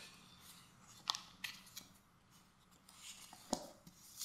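Thin pages of a Bible being leafed through by hand: a few faint paper rustles and flicks, about a second in and again near the end.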